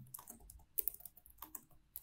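Faint typing on a computer keyboard: a run of separate keystroke clicks.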